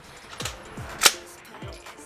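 Background music with a bass beat, and one sharp gunshot about a second in from another lane of an indoor shooting range.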